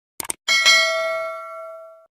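Subscribe-animation sound effects: a quick double mouse click, then a notification-bell chime that rings and slowly fades away.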